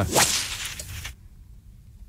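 A short swishing burst of noise that fades out within about a second, followed by quiet room tone.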